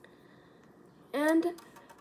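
Near silence with faint room tone, then a single spoken word about a second in.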